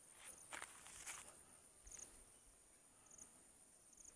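Near silence: faint, steady high-pitched chirring of insects in the surrounding vegetation, with short chirps, and two soft footsteps about half a second and a second in.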